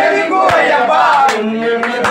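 A group of men chanting an Ayyappa devotional song together in loud unison, with a few hand claps.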